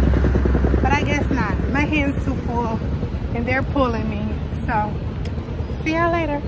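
Low, steady engine rumble of a vehicle, loudest in the first second and easing after, with voices heard over it.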